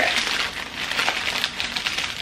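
Paper wrapping crinkling and rustling as it is pulled open by hand to unwrap a small product, with irregular crackles throughout.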